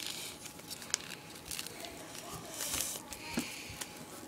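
Small sheet of paper being creased and folded by hand into an origami bird, with scattered crinkles and short rustles.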